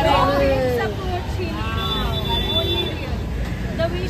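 Several people's voices talking and calling out over one another, with one drawn-out call in the middle, over a steady low background rumble.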